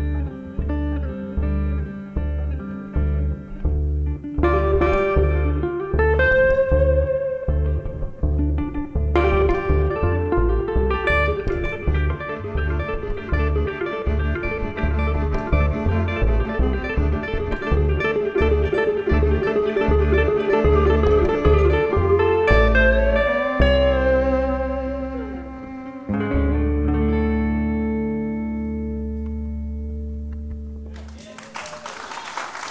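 Instrumental outro of a live roots trio: a hollow-body electric guitar plays lead lines over a regular plucked upright double bass, with a bowed violin. About four seconds from the end the band lands on a final chord that is held and fades away.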